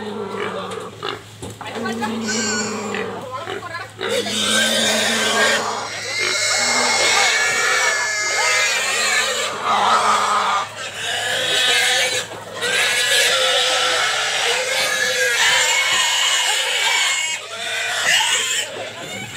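A pig squealing loudly and repeatedly as men hold it down in a rope net, with people's voices shouting over it.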